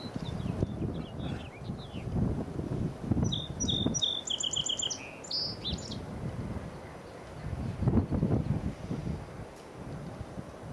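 A small songbird sings one short phrase about three seconds in: a few chirps, then a quick trill of repeated notes. Under it runs an uneven, gusting low rumble.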